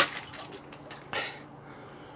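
A single sharp click right at the start, then a short, soft hiss about a second later.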